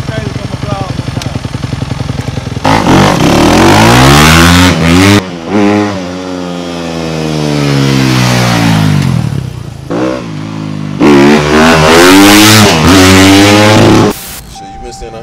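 Dirt bike engine idling with an even pulse, then revved hard about three seconds in as the bike pulls away. Its pitch climbs, drops away for several seconds as it rides off, then it is revved hard again from about eleven seconds on.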